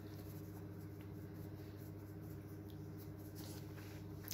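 Faint scratchy rubbing of a makeup brush working bronzer powder from a palette and onto the cheek, with a light click about a second in, over a steady low hum.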